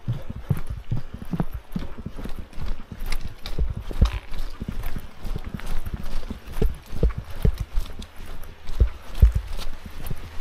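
A hiker's footsteps at a steady walking pace, about two knocks a second, on a wooden boardwalk and then a leaf-covered dirt trail.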